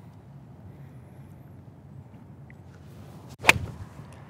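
Golf iron striking a ball off the turf: one sharp crack about three and a half seconds in, over a quiet outdoor background. It is a clean, well-struck contact, a really nicely hit shot.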